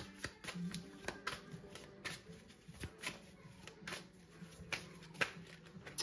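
A tarot deck being shuffled by hand, a run of soft, irregular card clicks and riffles, with cards slipping loose from the deck.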